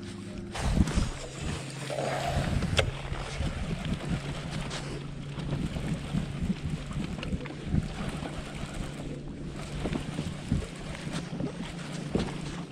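Bow-mounted electric trolling motor humming steadily, with wind on the microphone and water lapping at the boat. Scattered light clicks run through it.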